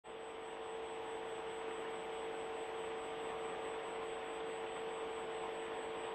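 Steady electrical hum with hiss on a broadcast audio feed, one held mid-pitched tone standing out and nothing changing.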